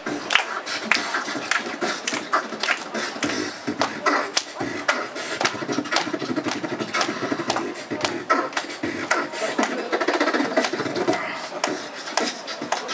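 Two beatboxers performing together into amplified microphones: a steady rhythm of mouth-made drum hits over a continuous vocal line.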